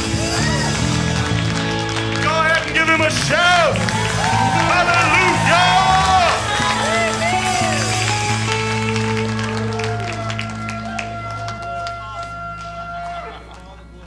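Live worship band of electric guitars, keyboard and drums holding a closing chord that rings out and fades over the last few seconds, with congregation voices shouting and cheering over it in the middle.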